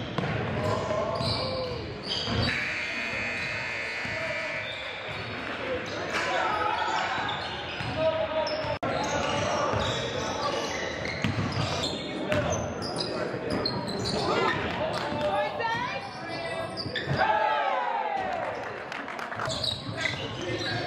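Live basketball game sound in a gymnasium: a ball dribbling and bouncing on the hardwood court among scattered players' voices and shouts, all echoing in the large hall.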